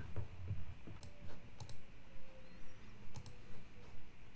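A few sharp clicks at a computer: a pair about a second in, another pair a little later, and a third pair past the three-second mark, over faint room tone.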